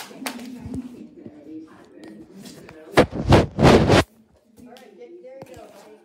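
Phone handling noise: loud rough scuffing and rubbing against the microphone in three quick pulses lasting about a second, midway through, with faint talking before and after.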